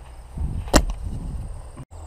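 A spinning four-armed boomerang whooshing through the air, with one sharp slap a little before halfway through.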